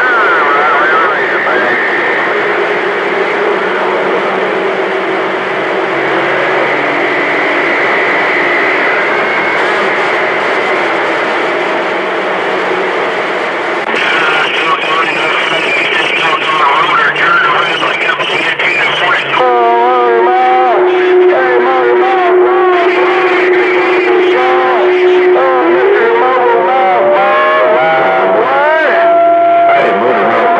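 CB radio receiving distant skip on channel 28: several stations come through the speaker at once as garbled, overlapping voices buried in static. From about two-thirds of the way through, steady whistling tones sit over the signals, and one whistle rises in pitch near the end.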